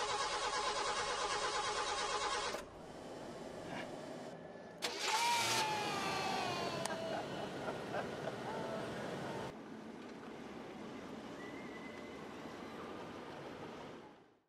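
An old car's engine being cranked by its starter, a fast even churning that cuts off sharply about two and a half seconds in. It is followed by quieter cabin noise, with a louder stretch in the middle that holds a high falling tone and a few clicks.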